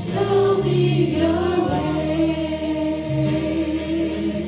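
Women's voices singing a worship song in long held notes over steady instrumental accompaniment.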